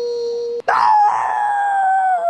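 A child's voice holding long howl-like notes: one steady note breaks off about half a second in, and after a click a louder, higher note follows and slowly slides down in pitch.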